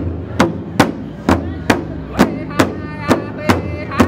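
Large powwow drum struck in unison by several drummers with padded sticks, a steady beat of a little over two strokes a second. About halfway in, one man's high-pitched voice comes in over the drum, starting the lead of the song.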